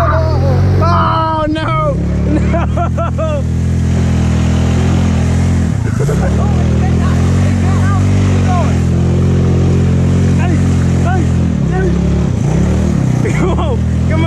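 Hammerhead GTS 150 go-kart's small single-cylinder engine running at a steady pitch, dropping briefly twice. People shout over it during the first three seconds or so.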